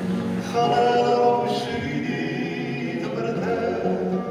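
Male vocal group singing together in several-part harmony, with long held notes.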